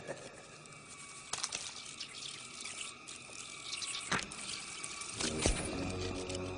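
Movie sound effect of a scarab beetle crawling out of sand: a busy run of small dry clicks and rustling, with a few sharper clicks. A low sustained drone comes in near the end.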